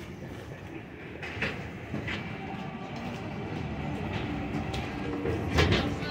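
City street traffic noise: a steady rumble of vehicles that grows slightly louder, with a few short knocks and a louder thump near the end.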